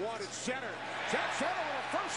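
Football game broadcast played back at low level: a commentator's voice over stadium crowd noise.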